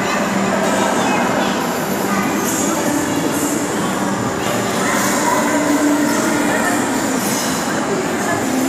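Steady din of a busy ice rink: skate blades scraping and gliding on the ice, with a few brief sharper scrapes, over indistinct voices.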